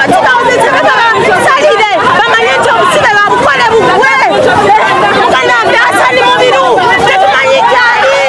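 Crowd of voices talking and shouting at once, with one woman's voice loud and close over the chatter.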